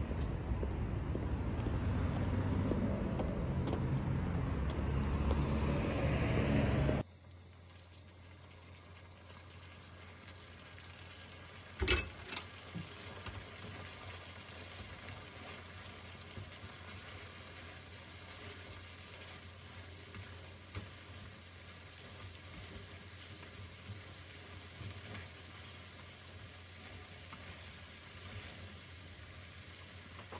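Street noise with a low rumble of wind on the microphone, which cuts off suddenly about seven seconds in. Then noodles in thick black bean sauce sizzle softly in a frying pan on a gas stove as wooden chopsticks stir and toss them, over a steady low hum, with one sharp clack about twelve seconds in.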